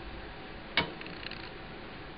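A single light click about a second in as a small metal part is fitted into the lathe headstock, over a low steady room hum; the lathe motor is not running.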